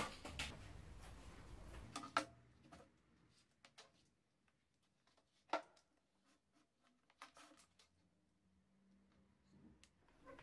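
Faint handling sounds of a battery charger and its clamp leads being picked up and set down on a table: a few soft, scattered clicks and knocks, the sharpest about five and a half seconds in, with a small cluster a little later.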